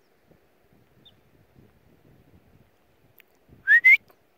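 A person whistling two quick rising notes near the end, calling a dog.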